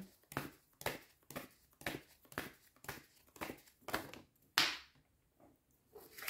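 A stack of homemade paper cards shuffled by hand: a papery rustle and flick about twice a second. The loudest comes a little past halfway, and the shuffling stops about a second before the end.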